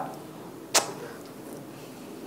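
A pause between a man's sentences: quiet room tone from a lapel microphone, with a man's voice trailing off at the very start and one short, sharp click about three-quarters of a second in.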